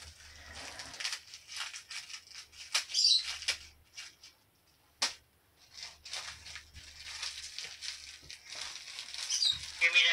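Irregular crinkling, rustling and small clicks as a baby handles a cookie and the plastic toys on her walker tray. There is a sharp click about halfway through and two brief high squeaks.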